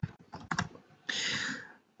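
A few keystrokes on a computer keyboard as a word is typed, then a brief hiss a little after the middle.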